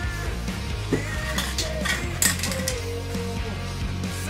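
Background rock music with a steady bass line, with a few light clinks and clatters of small hard objects being handled about a second to two seconds in.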